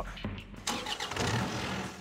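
A small tracked excavator's diesel engine starting up and running, its level rising about two-thirds of a second in and then settling into a steady hum.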